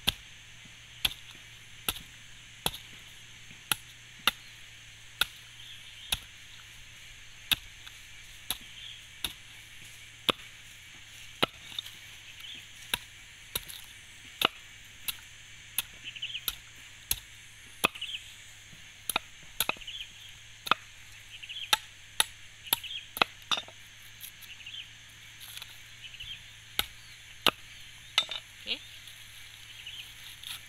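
A large knife blade striking the fibrous husk of a mature coconut held on a wooden block, chopping away the remaining husk in a run of sharp strokes about one a second, coming a little faster toward the middle of the run.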